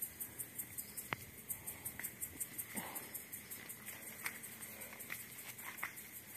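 Faint, high-pitched insect chirping, pulsing about five times a second, with a few soft clicks.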